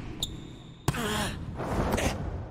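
Anime volleyball sound effects: a short steady whistle, then a sharp smack of the ball being hit about a second in, followed by arena noise and another hit near the end.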